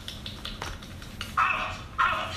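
A man's high-pitched laugh breaking out over a second in, after a few faint clicks.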